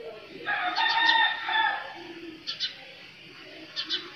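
A rooster crowing once for about a second and a half, starting about half a second in. Short high bird chirps come in pairs twice after it.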